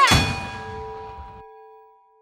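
A single loud metallic clang, the cartoon sound of a golf club hitting a head, ringing on in several tones that fade out over about two seconds.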